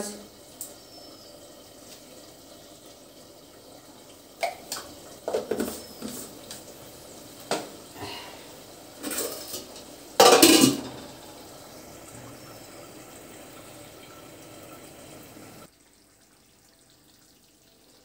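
Aluminium cooking pots and lids clattering and clinking as they are handled on a gas stove, with the loudest clatter about ten seconds in as a lid is lifted off. A steady low hiss runs underneath, then the sound drops away suddenly near the end.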